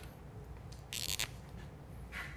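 A brief rustle of flip-chart paper about a second in, over a faint steady room hum.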